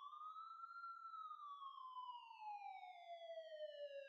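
A faint siren wailing: its pitch rises to a peak about a second in, then falls slowly until near the end.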